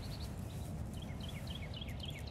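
A bird chirping a quick series of short, falling notes in the second half, over a steady low outdoor rumble.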